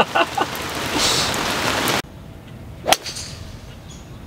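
Heavy rain hissing steadily on the ground and the golf cart's canopy, with a few short taps, cutting off abruptly about two seconds in. Then a quieter outdoor stretch with a single sharp snap about three seconds in.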